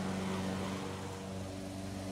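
A steady low hum over a faint hiss.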